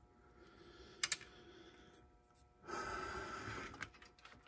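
Faint handling noise on a workbench: a couple of light clicks about a second in, a short rush of noise lasting about a second near three seconds in, and another click just before the end.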